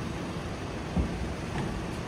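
Parked passenger van's engine idling with a steady low rumble, and a single thump about a second in.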